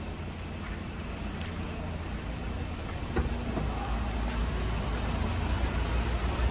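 A car engine idling with a steady low rumble, growing louder from about three seconds in, with a few faint clicks over it.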